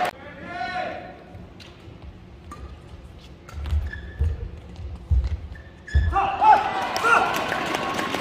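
Badminton rally on an indoor court: heavy footfalls and lunges thud on the court floor, with sharp racket hits on the shuttlecock. From about six seconds in, louder voices take over.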